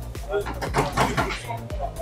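A car's rear door being unlatched and opened, with short clicks of the handle and latch, under background music with a steady low beat and faint voices.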